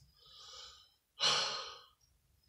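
A man breathing audibly between sentences: a faint breath, then a louder breath about a second in that fades away.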